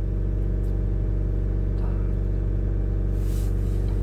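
Chevrolet Cruze 1.7 four-cylinder diesel engine held steady at about 3,000 rpm, heard from inside the cabin. It is burning off the cleaning chemical after a chemical DPF clean, with the exhaust back-pressure now back in the normal range.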